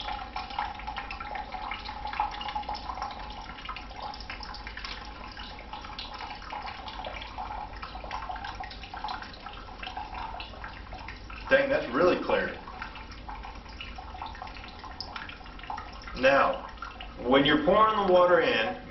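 Water trickling steadily out of the opened bottom of a homemade plastic-bottle water filter layered with rocks, charcoal and sand, as the dirty water drains through it.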